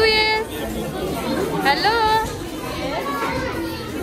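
Young children calling out in high voices, one right at the start and one about two seconds in, over the chatter of other children and adults in a large room.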